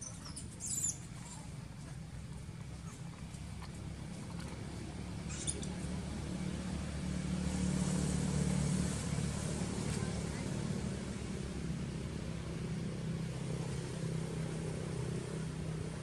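A vehicle engine runs with a steady low hum that grows louder toward the middle and then eases off. A short high squeal from a young macaque comes about a second in, and a fainter one follows a few seconds later.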